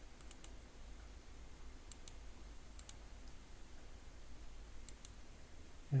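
Faint computer mouse clicks, a few quick pairs spaced out over several seconds, over a low steady hum.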